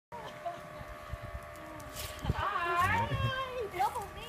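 A toddler's high-pitched vocalizing, gliding squeals that start about halfway through, over the steady hum of a toy bubble machine's motor.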